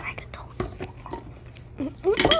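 Close-up eating sounds: chewing and small wet mouth clicks and smacks, with a brief voiced sound near the end.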